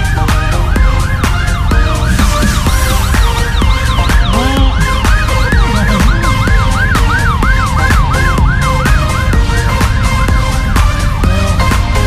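Vehicle siren sounding a fast yelp, rising and falling about two and a half times a second, fading out near the end. It is heard under electronic dance music with a steady beat.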